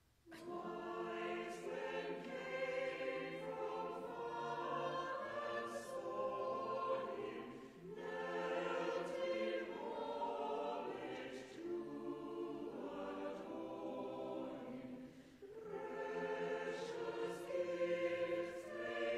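Mixed church choir singing a carol in a stone church, starting right at the outset after a silence. The singing is in phrases, with brief breaks for breath about 8 and 15 seconds in.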